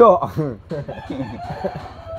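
A rooster crowing, its call ending in a long held note near the end, over men's voices.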